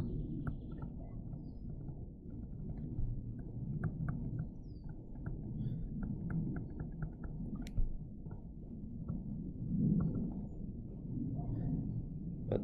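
Low, uneven rumbling background noise from the microphone, with scattered faint ticks of a stylus tapping and writing on a tablet screen.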